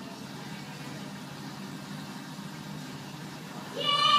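Steady low hum of running aquarium equipment with a faint watery hiss. Just before the end a high voice starts.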